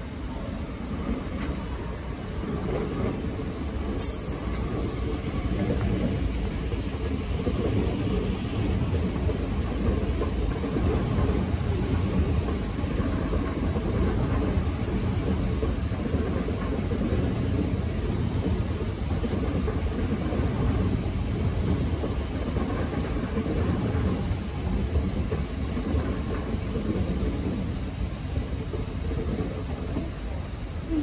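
A Metro Trains Melbourne HCMT electric train running through the station without stopping. Its steady low wheel-and-rail running noise grows louder as it comes close and eases as it draws away. A brief high whistle falls in pitch about four seconds in.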